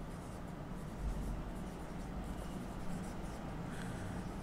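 Marker pen writing on a whiteboard, faint.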